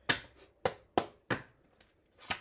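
A deck of tarot cards being handled: four sharp card taps or snaps, each about a third to half a second apart, then quiet.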